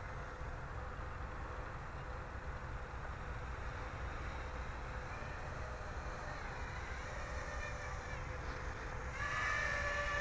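Small home-built quadcopter's brushless motors and propellers, a faint distant whine over a steady low rumble; about nine seconds in the whine grows louder and rises in pitch as the quad flies in close.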